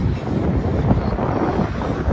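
Strong wind buffeting the microphone: a gusty low rumble.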